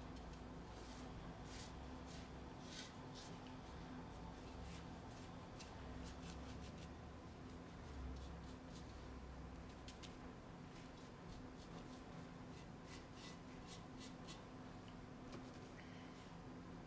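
Faint, scratchy strokes of a paintbrush dabbing paint onto a fibreglass urn and picking up paint from a palette board, coming in short irregular bursts, over a steady low hum.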